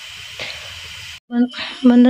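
Food frying in a pan: a steady sizzling hiss that cuts off abruptly a little over a second in, after which a voice begins.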